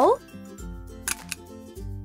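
A hole punch clicking once as it punches through a card triangle, about a second in, over light background music.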